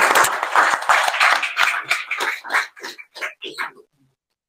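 Audience applauding, the dense clapping thinning out to a few scattered claps near the end and then stopping.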